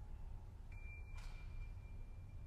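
The faint tail of an orchestral recording as the music dies away: a steady low rumble with a thin, faint high tone entering partway through.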